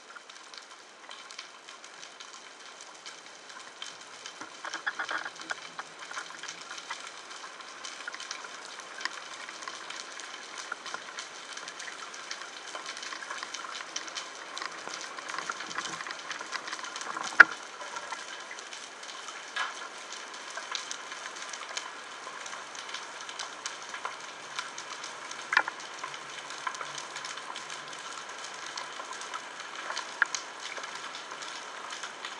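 Underwater crackling ambience: a steady, dense field of fine snaps and clicks in the sea, picked up by a camera underwater, with a few sharper single clicks standing out, the loudest a little past halfway.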